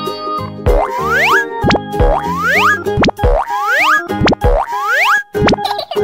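Cartoon sound effects over cheerful children's background music: a string of quick rising pitch glides, each paired with a steep falling swoop down into a low thud, repeating about once a second.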